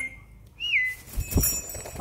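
A parrot's short whistled note that rises and then falls to a brief held pitch, followed by a soft low thud.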